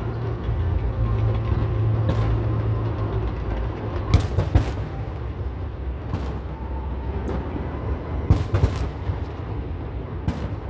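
New Year fireworks going off across a city: a continuous low rumble of many distant bursts, with sharp bangs in a quick cluster about four seconds in, single cracks near six and seven seconds, and another cluster just past eight seconds.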